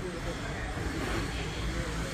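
Beetleweight combat robots' electric drive and weapon motors running as they manoeuvre in the arena, a steady motor noise with a low rumble, under background voices.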